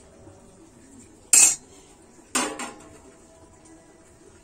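A steel ladle clinking against a stainless steel bowl twice, about a second apart, as it is lifted out. The second clink rings briefly.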